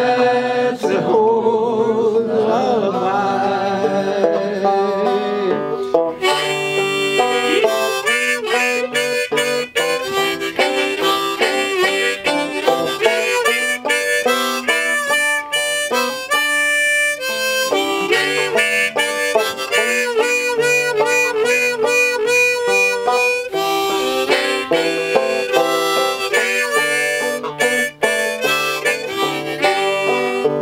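A harmonica held in a neck rack plays a lively instrumental break over steady picked banjo accompaniment.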